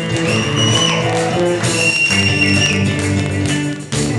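Live heavy metal band playing: distorted electric guitars, bass and drums, with two long high lead notes held over the chords.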